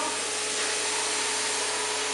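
Compressed-air paint spray gun hissing steadily as it sprays paint, over a faint steady humming tone.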